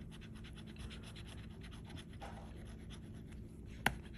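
Plastic scratcher tool scraping the coating off a scratch-off lottery ticket in quick, short strokes, faint. One sharp click comes just before the end.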